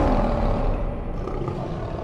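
A lion's roar sound effect from a logo sting, a deep sustained rumble that slowly fades.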